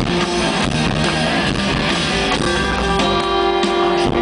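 Rock band playing live, heard from the crowd through the PA: electric guitar to the fore over regular drum hits, with a held note coming in about three seconds in and no singing.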